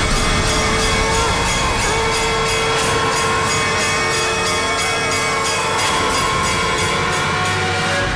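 Dramatic background music of a TV serial score: held, wavering tones over a fast, even, high-pitched jingling beat. The beat stops at the very end.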